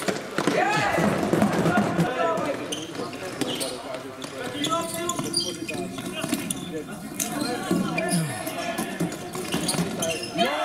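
Floorball play in a sports hall: players' voices calling out across the court, over repeated short clacks of plastic floorball sticks on the ball and the floor, with running footsteps on the court.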